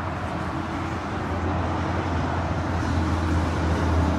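Steady low rumble of background traffic noise, with no distinct events.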